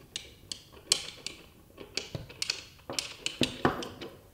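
Metal weights being screwed onto a Steadicam Merlin 2 stabilizer by hand: a dozen or so sharp, irregular clicks and light metal taps.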